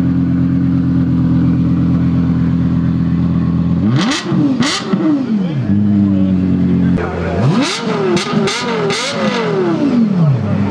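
Lexus LFA's 4.8-litre V10 idling steadily, then revved in sharp blips that rise and fall quickly. There are two about four seconds in, then a quick run of several more from about seven seconds.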